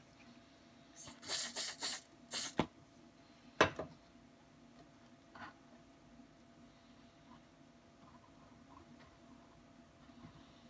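Short hisses from an aerosol can of fast-bond glue activator, about five quick sprays within the first three seconds. A single sharp knock follows about a second later.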